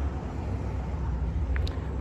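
Steady low outdoor background rumble, with a brief faint chirp about a second and a half in.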